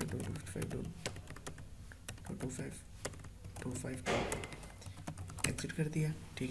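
Typing on a computer keyboard: a steady run of quick, separate keystrokes.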